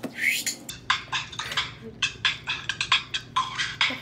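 A few seconds of a Christmas song played through a smartphone's small speaker, with a busy run of sharp beats.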